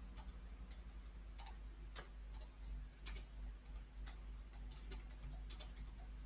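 Faint, irregularly spaced clicks and ticks over a steady low electrical hum.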